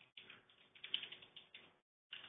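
A short run of faint clicks at a computer, bunched about a second in, as the presenter switches over to a virtual machine window.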